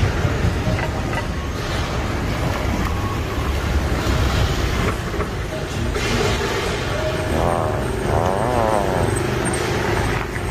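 Steady low rumble of city traffic. A steady drone joins in about six seconds in, and a warbling, wavering tone sounds twice near the end.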